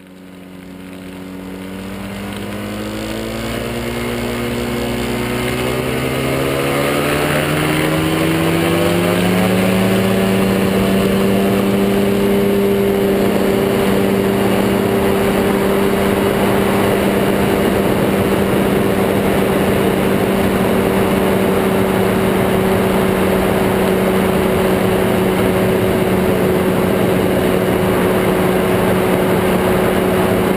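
Ultralight trike's pusher engine throttling up for takeoff, its pitch rising over about ten seconds, then running steady at full power.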